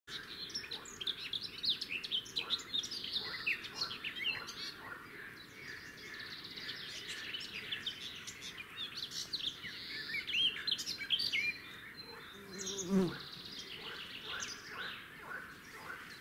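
Small birds chirping and calling almost without pause around a fieldfare nest with gaping nestlings: many quick, high, sliding notes. About thirteen seconds in, a short, lower-pitched sliding call or voice rises above them.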